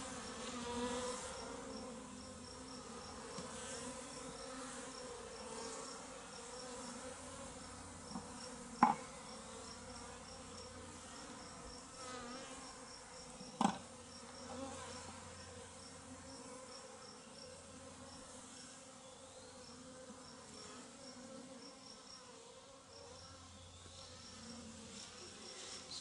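Honeybees flying in numbers around an opened top-bar hive, a faint steady hum of wings. The colony is pouring out because the hive has no entrance yet. Two short sharp ticks come in the middle, about five seconds apart.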